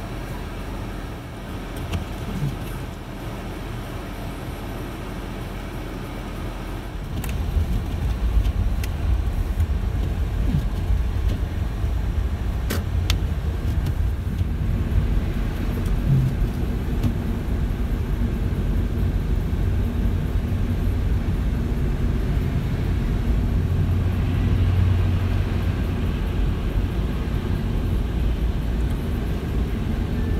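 Car cabin noise while driving on snowy, slushy roads: a steady low rumble of engine and tyres that gets louder about seven seconds in.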